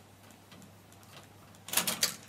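Plastic cassette-door cover of a cassette deck being worked loose by hand: faint handling noise with a couple of light ticks, then a quick cluster of sharp plastic clicks near the end as it comes free.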